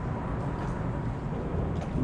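Steady low outdoor rumble with no distinct event, and a couple of faint ticks near the end.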